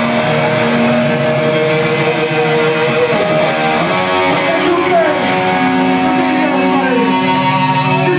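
Heavily amplified electric guitar of a hardcore/metal band holding long sustained notes, with slides in pitch, rather than full-band riffing.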